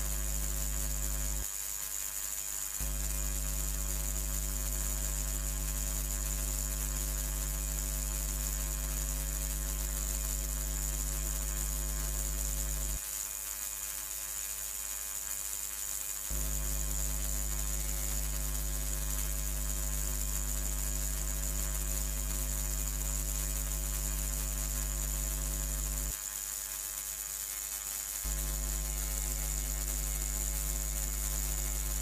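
Steady electrical buzz: a mains hum with many overtones and a thin high whine above it. The lowest part of the hum drops out briefly three times: about a second and a half in, for about three seconds around the middle, and again near the end.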